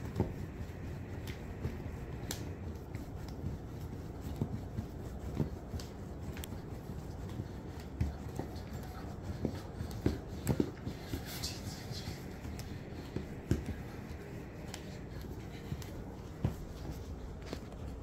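Bread dough being kneaded by hand on a countertop: irregular soft knocks and small clicks over a steady low background.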